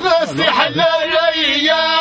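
Men's voices chanting an inshad, a religious chant, in long held melodic lines with slow pitch bends and no instruments.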